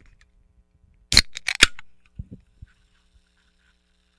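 A Coca-Cola can being opened about a second in: the tab pops with a sharp crack, followed by a short hiss of escaping carbonation with a few clicks. Then come a few soft knocks and faint fizzing of bubbles.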